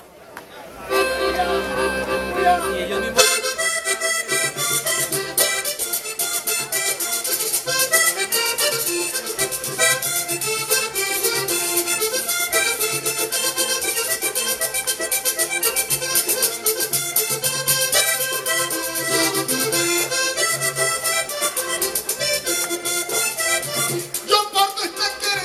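Vallenato accordion playing an instrumental lead-in to a round of sung improvised verses. It holds a chord alone at first, and from about three seconds in the caja drum and scraped guacharaca join in a steady fast rhythm.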